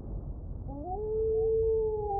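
A wolf howling: one long call that begins about two-thirds of a second in, rises in pitch, then holds steady. A low rumble fades away under the opening of the call.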